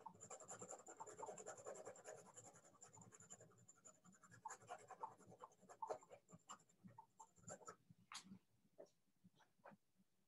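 Faint scratching of a drawing tool on paper as shading strokes are laid down: a close run of quick back-and-forth strokes, thinning after about four seconds into separate short strokes with pauses between them.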